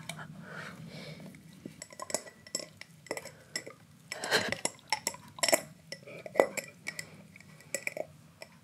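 A husky licking and gnawing at a glass jar, its teeth clinking and scraping on the glass in irregular sharp clicks, with a few louder clusters partway through.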